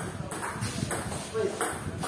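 Table tennis ball clicking off paddles and the table in a doubles rally, a quick series of sharp ticks.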